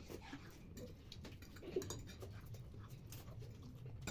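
Quiet sounds of noodles being eaten with forks from plastic plates: scattered faint clicks and scrapes and soft breathing, over a low steady hum.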